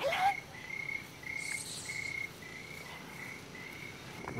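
Cricket chirping steadily: a short high chirp repeated about two to three times a second.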